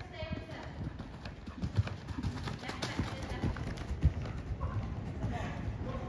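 Hoofbeats of a ridden grey horse moving around an indoor arena on a sand surface, a run of uneven footfalls.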